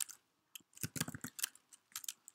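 Computer keyboard being typed on: a quick run of about ten light key clicks in a little over a second as a line of code is entered.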